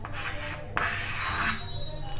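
Chalk scraping on a blackboard as a numeral is written, a scratchy rasp strongest for about a second in the middle.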